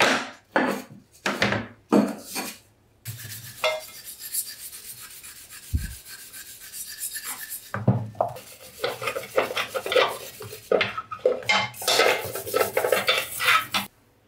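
Metal parts clinking and clattering as they are set down, then a steady hiss for a few seconds, then a brush scrubbing the band saw's metal housings in a tub of soapy water in quick rubbing strokes.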